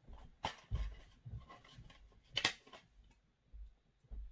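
Plastic DVD case being handled and opened: scattered clicks and soft knocks, the sharpest click about two and a half seconds in.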